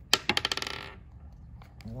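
A small wooden ball from a ball-and-stick molecular model kit drops onto a hard tabletop and bounces. The bounces are a quick run of clicks that come faster and fainter and die away within about a second.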